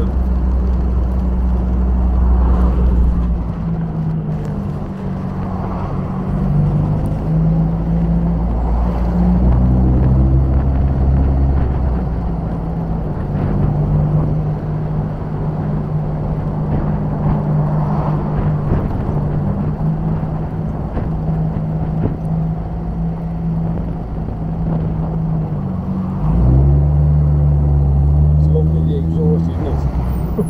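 1953 MG TD Mark II's four-cylinder engine pulling the car along the road, heard from the open cockpit together with exhaust and road noise. The engine note steps in pitch several times as the car goes through the gears, and grows louder and deeper near the end; it runs smoothly, with no misses.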